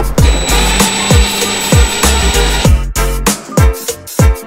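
Cordless drill running steadily for about two and a half seconds, driving a self-tapping screw through the diffuser into the plastic bumper, under background music with a heavy kick-drum beat.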